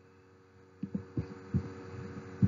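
Four irregular dull low thumps, starting about a second in, over a faint steady hum.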